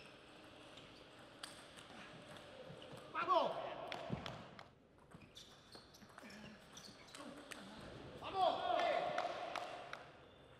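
Table tennis rallies: the celluloid-type plastic ball clicks sharply off rubber bats and the table in quick, uneven strikes. A loud voice shout rises over the play twice, about three seconds in and again near the end, as points are won.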